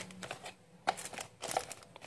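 Faint rustling and a few light clicks of plastic-and-foil ration trays and packets being pushed back into a cardboard box.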